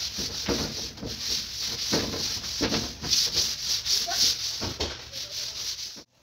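Scrubbing strokes by hand on a metal bunk-bed frame: a rough, rasping hiss with a few irregular knocks, cutting off suddenly at the end.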